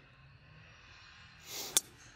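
A golf driver swung off the tee: a short rising whoosh of the club through the air, then a single sharp crack as the clubhead strikes the ball, near the end.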